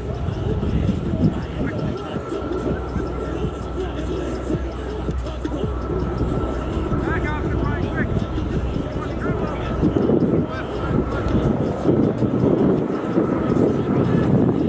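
Outdoor ambience of distant players calling out during a pickup soccer game, over a low steady rumble and a faint steady whine. The rumble stops near the end, and the voices grow louder in the last few seconds.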